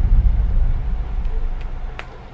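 A deep rumbling boom slowly dying away; its loud onset falls just before and the rumble fades steadily. A couple of faint laptop key clicks come near the end.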